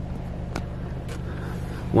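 Belanger Vector in-bay automatic car wash spraying triple foam onto the car, heard from inside the cabin as a steady low hum with a soft hiss of spray and a couple of faint ticks.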